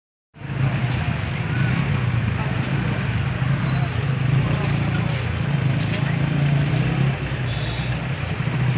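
Steady street noise: a vehicle engine running with a constant low hum, mixed with people's voices in the background.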